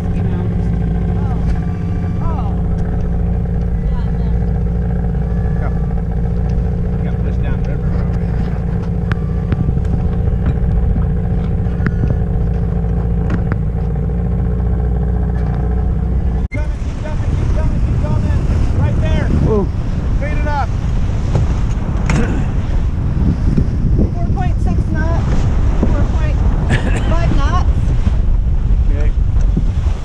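A boat's motor running steadily at one constant speed, which cuts off suddenly a little past halfway. After that, wind buffets the microphone and water rushes past the hull of the moving sailboat.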